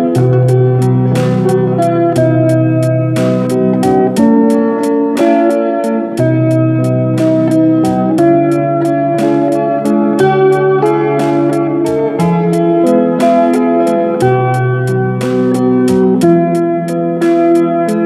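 Solo acoustic guitar played fingerstyle: a slow ballad melody plucked on the treble strings over bass notes that ring for a second or two each.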